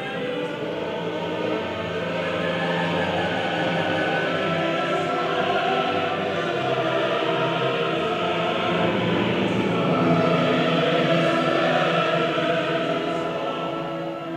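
Symphony orchestra and large mixed choir performing together in sustained sung and played chords, growing louder to a peak about ten seconds in, then easing off near the end.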